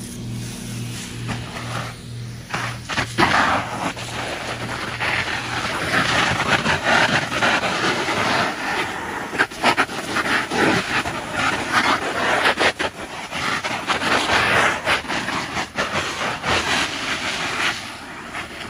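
A jet of water spraying onto and splashing off an inflatable plastic kiddie pool, a loud hissing spray that rises and falls as the stream moves over the pool. It starts about three seconds in, after a low pulsing hum.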